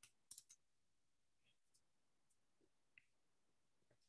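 Near silence, with a quick cluster of four or five faint, sharp clicks right at the start and one more about three seconds in.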